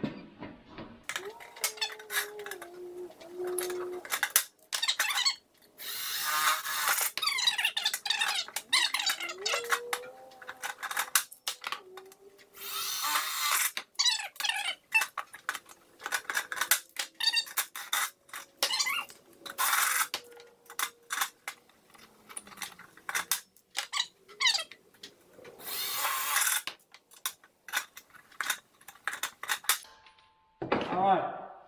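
Cordless drill boring through thin galvanized sheet steel in several short bursts of a second or so. Between the bursts come sharp clicks and metal clatter as a hand pop-rivet gun sets rivets.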